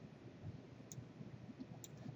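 Two faint computer mouse clicks about a second apart, over low steady room noise.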